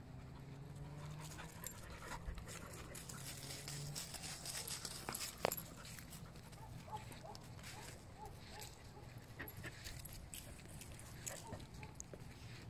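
A dog panting, faint, with scattered footsteps crunching on dry leaves and dirt and one sharp click about five seconds in.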